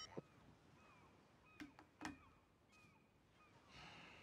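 Near silence with faint outdoor ambience: a few short, faint bird chirps and two soft knocks about a second and a half and two seconds in, as a phone is set down on a tabletop.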